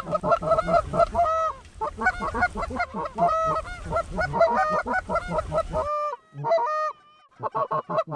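Canada goose honks and clucks in rapid, overlapping succession, a hunter's goose call working an incoming flock. A low wind rumble on the microphone cuts off abruptly about six seconds in, followed by a short lull before the honking resumes.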